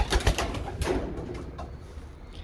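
Racing pigeon hens in a small wooden loft: several quick wing flaps and scuffles in the first second, then quieter shuffling.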